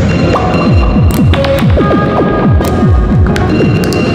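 Prototype Buchla module combining an Orgone Accumulator oscillator and Radio Music, played through reverb and delay: a stream of quick downward-falling pitch sweeps, several a second, over a few steady high tones with scattered clicks.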